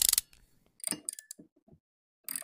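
A brief hiss-like burst at the start, then a series of short, irregular mechanical clicks and knocks, like hand tools working in a car's engine bay.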